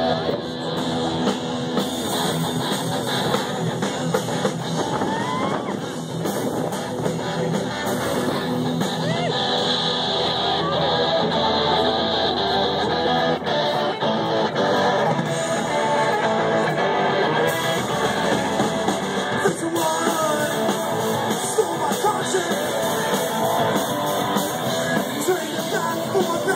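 Live rock band playing the instrumental opening of a song: electric guitars and a drum kit.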